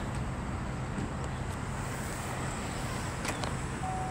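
Steady low hum of an idling vehicle engine, with a few faint light clicks.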